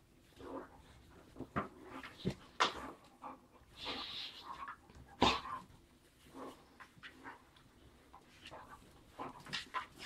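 Two dogs play-fighting at close quarters: short dog vocal noises, mouthing and scuffling come in irregular bursts, with a few sharp snaps, the loudest about five seconds in.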